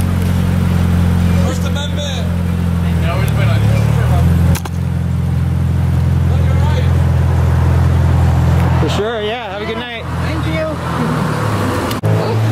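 A car's engine running close behind, a deep steady hum that shifts in pitch about four seconds in, then fades as the car pulls away about nine seconds in. At that point a man's voice shouts from the car.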